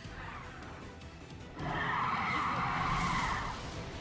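Audio from the anime episode: soft background music, then a loud rushing hiss sound effect that starts about halfway through, lasts about two seconds and fades away.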